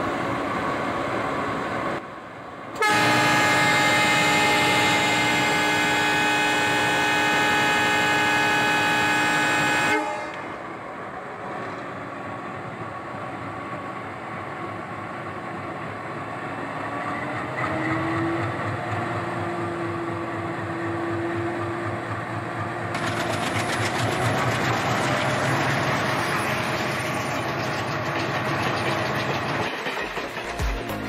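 A train horn sounds one long chord for about seven seconds, starting about three seconds in. It is followed by the steady rumble of a moving train.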